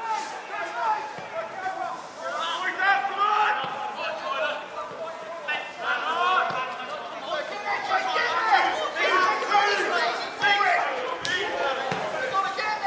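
Several indistinct voices of players and onlookers talking and calling out at once. A single sharp knock comes near the end.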